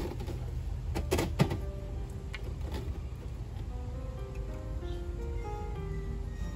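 Soft background music of held notes in a slow melody, with two sharp knocks of plastic filter parts being handled about a second in, over a steady low hum.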